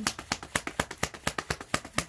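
Rapid, even clicking, about seven sharp clicks a second, keeping a steady rhythm.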